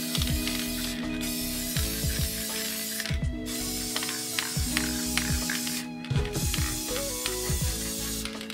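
Aerosol spray can of Krylon UV Archival satin varnish hissing in long bursts of two to three seconds, with short breaks between them, as a clear protective coat goes onto clay coasters.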